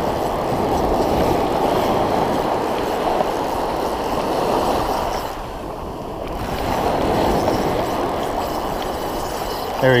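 Ocean surf washing and breaking in the shallows, a steady rush with a brief lull a little past halfway.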